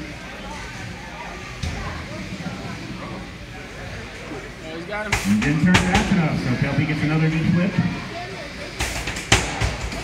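Sharp knocks of 3 lb beetleweight combat robots slamming together and being flipped in a clear-walled arena: one about five seconds in, another just after, and a quick cluster near the end. A steady crowd murmur and voices run underneath.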